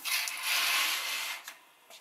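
Rustling, scraping handling noise as coins are taken off a balance scale's pan, lasting about a second and a half and then stopping.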